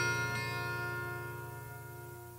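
A strummed guitar chord from a rock song, left ringing and slowly fading away.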